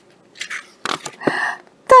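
Paper page of a picture book being turned by hand: a few short rustles and scrapes of paper.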